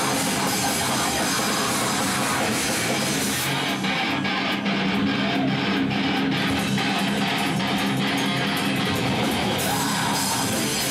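Extreme metal band playing live: distorted electric guitars with bass and drums. For a stretch in the middle the high end thins out and the chords fall into evenly spaced hits, before the full band returns near the end.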